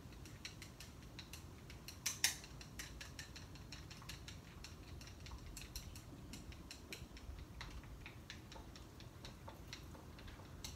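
Wooden chopsticks clicking irregularly against a porcelain bowl as raw eggs are stirred to break up green food-coloring gel, several light taps a second with a louder pair about two seconds in.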